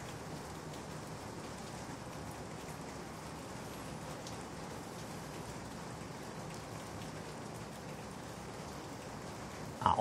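Steady, even background hiss of room tone, with no distinct sounds in it.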